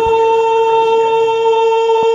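A man's voice holding one long, high sung note at the top of a do-re-mi scale, loud and unwavering in pitch.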